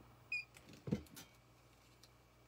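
A piece of metal jewelry clinks once, giving a short, bright ring, as it is picked up. About a second later comes a soft, low knock and a faint click as pieces are handled.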